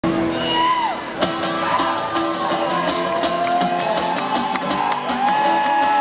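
Live gypsy-punk band music heard from the audience: long held melody notes that slide at their ends, with drums and cymbals coming in about a second in and keeping a steady beat.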